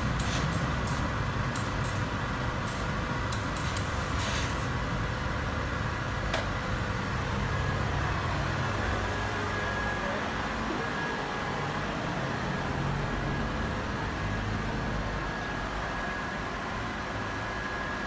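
Steady hum of a BEE B23 vacuum ironing table's suction fan, with a run of short steam bursts from its boiler-fed steam iron in the first five seconds. A single sharp click comes about six seconds in.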